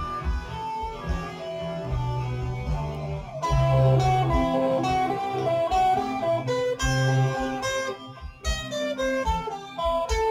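Electric guitar playing a single-note melody line over a backing track. The music gets louder and fuller about three and a half seconds in.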